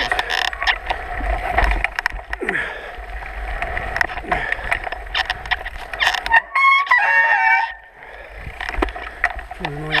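Mountain bike rattling and knocking over rough, rooty singletrack, with tyre and wind noise on the microphone. About six and a half seconds in there is a short, high, wavering squeal lasting about a second, and the rider laughs near the end.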